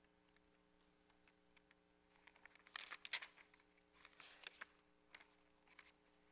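Paper pages of a hymnal rustling as they are turned, in two short flurries a little over two seconds in and around four seconds in, with a few single clicks after them, over a faint steady hum.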